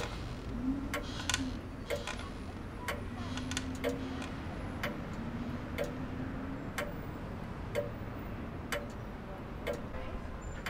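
A clock ticking about once a second.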